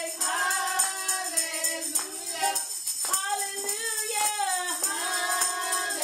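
Gospel song playing: a woman's voice singing long held notes, with backing voices and a tambourine striking along.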